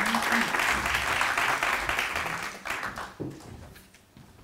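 Audience applauding, the clapping dying away about three seconds in.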